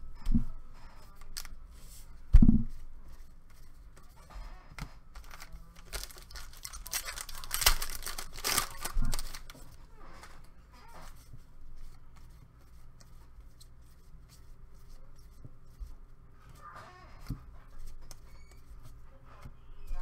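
Foil trading-card pack torn open by hand in a burst of ripping and crinkling through the middle, then a softer rustle of cards being handled. A few sharp thumps come first, the loudest about two seconds in.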